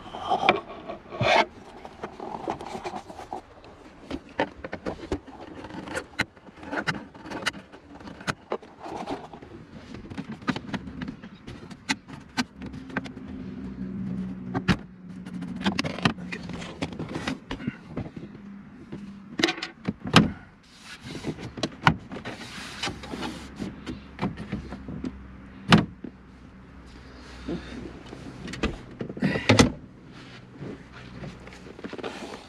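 Irregular clicks, knocks and rattles of hand tools working in a car's plastic dashboard to undo the head unit's mounting nuts.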